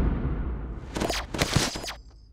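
Cartoon action sound effects: a low rumble dying away, then a quick run of short, sharp hits and swishes about a second in.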